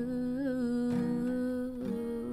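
A woman humming one long held note with a slight waver in pitch, over an acoustic guitar that is strummed about a second in and again near the end.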